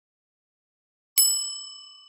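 A single bright bell ding, the notification-bell sound effect of a subscribe-button animation, struck about a second in and fading out over under a second.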